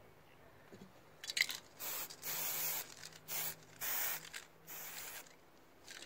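Aerosol spray-paint can spraying in about five short hissing bursts, after a brief clatter about a second in.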